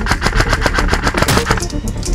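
Airsoft electric rifle (Krytac MK2) firing a rapid full-auto burst of sharp clicking shots for about a second and a half, over background music.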